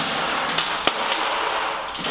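Paperhanging brush swept over freshly pasted wallpaper on the wall, a steady scratchy rustle of bristles on paper with a few sharp clicks, the loudest a little under a second in.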